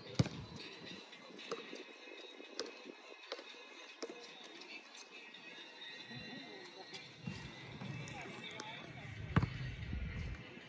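A basketball bouncing on a paved outdoor court: scattered single bounces roughly a second apart, with one louder bang just before the end.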